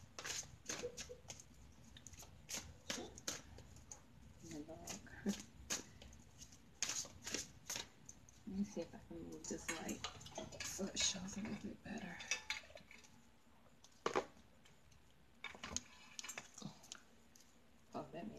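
A deck of tarot cards being shuffled by hand: a run of quick, irregular card flicks and taps, thinning out for a few seconds near the end.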